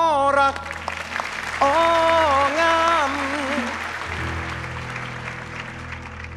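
A man singing long held notes at the opening of a Thai luk thung song over band backing, with audience applause that fades out about two-thirds of the way in, leaving the band alone.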